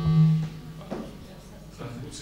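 A short electrical buzz through the PA as a microphone is handled and swapped, a steady pitched hum that fades out about half a second in. Faint handling knocks follow.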